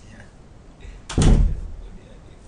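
A single loud thump about a second in, deep and dying away within half a second.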